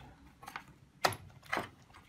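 Hard plastic parts of an electric shower's inlet solenoid valve assembly clicking and knocking against the casing as it is worked up out of its locked position: three short sharp clicks, the loudest about a second in.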